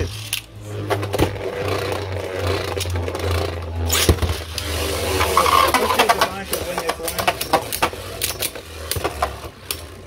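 Two Beyblade Burst tops, Ultimate Valkyrie and Divine Belial, spinning in a plastic stadium just after launch: repeated sharp clacks as they hit each other and the stadium wall, over a steady low hum.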